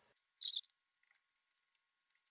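Fast-forwarded audio: one short high-pitched chirp about half a second in, then faint scattered ticks.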